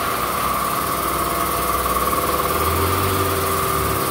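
Daihatsu Sirion's engine idling steadily, with a steady high-pitched hum over it.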